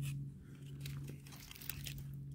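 Faint scattered clicks and rustling of a tape measure being handled and pulled out over a wooden board, with a thin steady low hum underneath.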